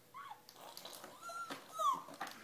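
A 31-week-old baby's high-pitched squeals and whines: a short falling squeal at the start, a held note midway, and a louder falling squeal near the end.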